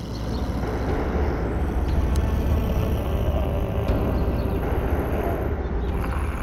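Steady outdoor street noise with a heavy low rumble and a few faint clicks.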